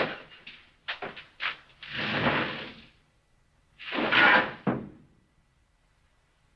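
A man's laughter trailing off in short bursts, then two longer noisy sounds, the second the loudest, dying away about five seconds in.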